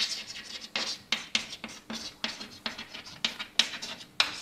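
Chalk writing on a chalkboard: a quick, irregular run of short scratchy strokes and taps, about a dozen in four seconds.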